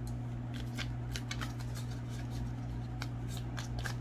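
Tarot cards being handled and shuffled by hand: an irregular run of soft flicks and clicks, over a steady low hum.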